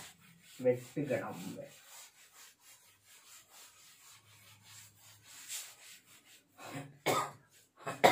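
A cloth wiping chalk off a blackboard in repeated rubbing strokes. A short cough from the man comes about a second in, and another short vocal sound just before the end.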